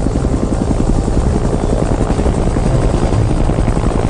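Army helicopter's rotor chopping steadily and fast while it hovers, a cartoon sound effect.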